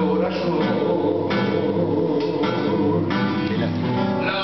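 Acoustic guitar playing an instrumental tango passage: chords struck about once a second over ringing bass notes.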